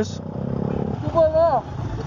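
Motorcycle engines running in street traffic, a steady low rumble, with a short shouted call about a second in.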